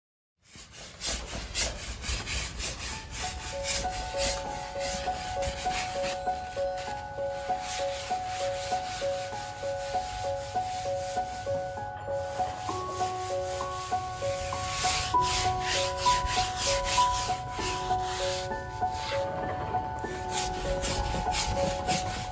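A wide brush scrubbing thin paint across a large canvas in quick, repeated strokes. Soft background music with a light, repeating melody comes in about three seconds in.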